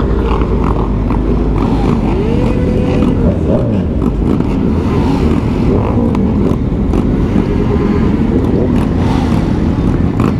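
Motorcycles riding in a large group: the camera bike's sportbike engine running under way amid other bikes, with a steady low rush of wind and road noise. About two seconds in, one engine's pitch rises as it revs up.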